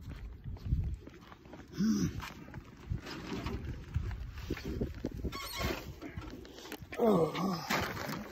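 Short wordless voice sounds: a brief rising-and-falling call about two seconds in and a louder, wavering one near the end.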